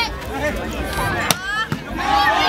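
A volleyball struck by a hand, one sharp slap about two-thirds of the way in, heard among the shouting of players and spectators.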